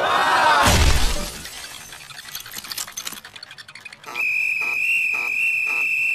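Cartoon sound effects: a sudden smash with shattering, followed by a few seconds of fine tinkling like falling fragments. From about four seconds in, a steady high whistling tone sounds with a pulsing beat beneath it.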